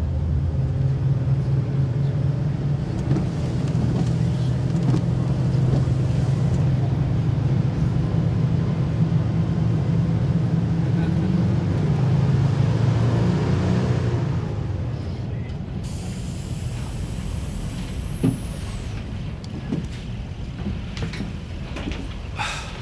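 Coach engine and road noise heard from inside the bus: a steady low drone. About two-thirds of the way through it drops away and grows quieter, and then comes a high hiss of air brakes as the coach slows and stops.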